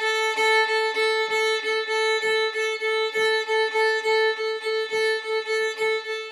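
Violin bowed on one steady note, the open A string, in short even strokes about four a second. The bow changes direction without coming to a full stop, so the strokes run together smoothly: a slow perpetual-motion bowing drill using the wrist for seamless bow changes.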